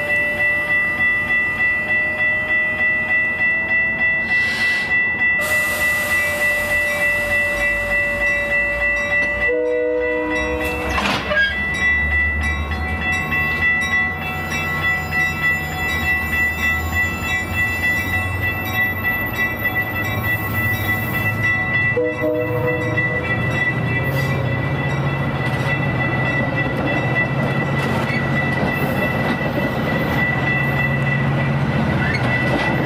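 Metra stainless-steel bilevel commuter coaches rolling past close by, their wheels clicking over the rail joints. A steady high ringing, pulsing about twice a second, runs underneath, and a deeper rumble builds through the second half.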